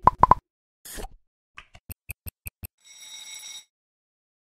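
Animated-logo sound effects: three quick loud pops, a short swish about a second in, a run of about six sharp ticks, then a brief bright shimmering chime near the end.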